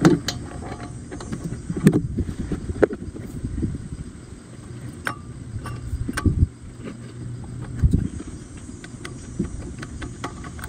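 Small metal clicks and knocks, spread unevenly, as a 10 mm wrench loosens the carburetor bowl nut on a small Honda engine and fingers turn the nut out over a rag, with a low steady background hum.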